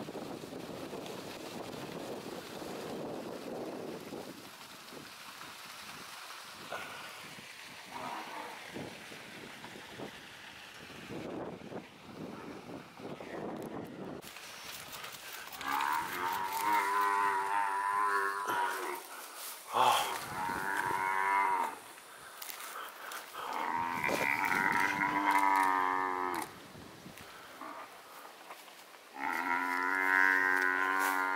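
Cape buffalo bellowing in distress as lions attack it: four long, wavering calls of two to three seconds each, beginning about halfway through, the last running on past the end.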